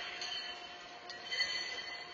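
Steel horseshoes ringing after striking metal stakes in a large arena. An earlier ring fades, then a fainter clank comes about a second in with a high, sustained metallic ring.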